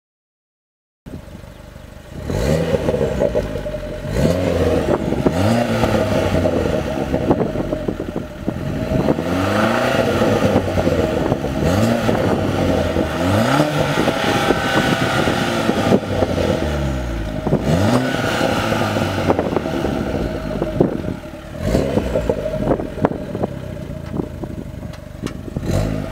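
Fiat 1.4 T-Jet turbocharged four-cylinder engine breathing through a non-resonated cat-back exhaust and downpipe, starting about a second in at idle, then revved in repeated short blips, the pitch rising and falling with each one, with idle between.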